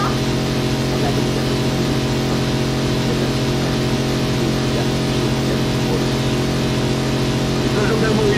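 A steady low hum made of several fixed tones, unchanging throughout, with faint voices under it.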